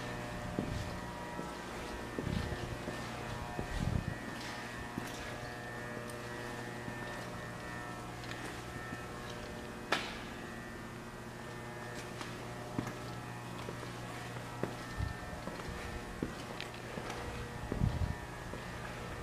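A steady, unchanging machine hum, with a few faint knocks and one sharp click about ten seconds in.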